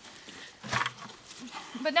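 A pig grunts once, briefly, just under a second in, while feeding on scraps.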